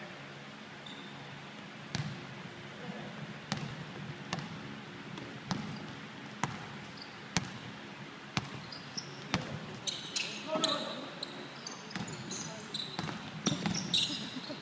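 Basketball dribbled on a wooden gym floor, bouncing about once a second. From about ten seconds in, sneakers squeak sharply on the court as play picks up.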